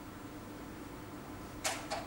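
Quiet, steady room noise of a lecture hall during a pause, with two short hisses near the end.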